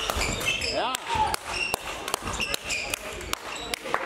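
Badminton doubles rally in an echoing sports hall: sharp racket strikes on the shuttlecock and short sneaker squeaks on the court floor, with a rising shout about a second in and voices from other courts.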